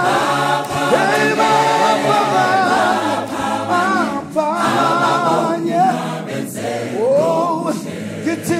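Mixed gospel choir singing a cappella in several voice parts, with pitches sliding and moving together in close harmony.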